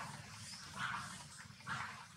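Newborn long-tailed macaque nursing at its mother's chest, making short soft sounds about once a second, three in all, over a low steady rumble.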